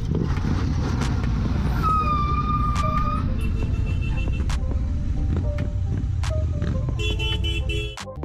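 Royal Enfield motorcycle running at road speed under heavy wind rumble on a helmet camera's microphone. A vehicle horn sounds about two seconds in for about a second, and music with a tune plays over the ride from about three seconds on.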